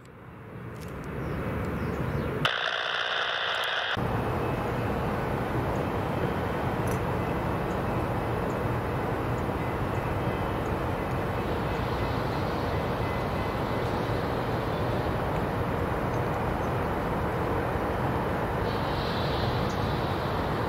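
Steady low outdoor rumble of city traffic and a distant passenger train, with no distinct events. Between about two and four seconds in, the sound changes briefly at a cut before the steady rumble resumes.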